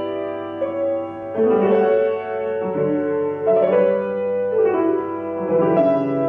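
Solo grand piano playing classical music: held chords and melody notes struck and left to ring, changing every second or two.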